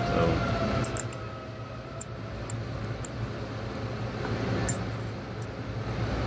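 A steel pick working a guide band out of the seal groove in a pneumatic actuator's end cap: small, irregular clicks and scrapes of metal on the cap, over a steady low hum.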